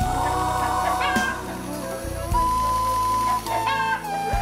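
Background music: a tune of held melody notes over a steady bass line.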